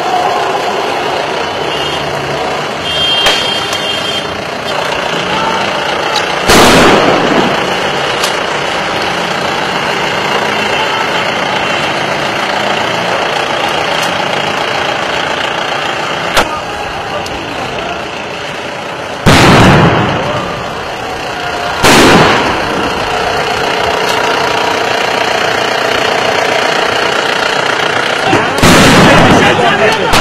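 Street noise with voices and vehicle engines, broken four times by loud bangs, the sound of tear-gas shells being fired during street clashes.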